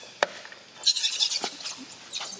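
Young macaques squealing in short, high-pitched bursts during a scuffle, the loudest stretch lasting under a second near the middle, after a single sharp knock shortly before it.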